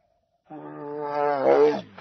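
A cat's long moaning yowl, starting about half a second in and lasting over a second, swelling in pitch and loudness and then dropping away at the end.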